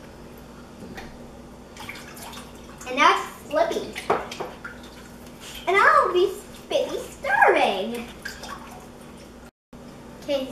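Several short, quiet bits of voice over a steady background hiss, with a brief silent dropout near the end.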